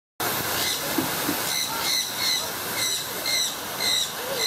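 A bird repeating a short, high call about twice a second over a steady background hiss.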